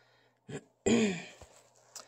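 A woman clearing her throat once, a short rasp that falls in pitch about a second in, just after a short click.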